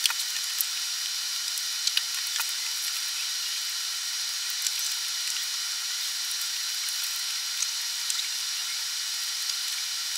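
Steady hiss of room and recording noise, with a faint low hum and a few scattered soft clicks and ticks.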